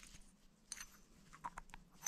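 Faint handling sounds: a few light clicks and ticks as the stud and threaded cap of an adjustable ball joint are unscrewed by hand from the body.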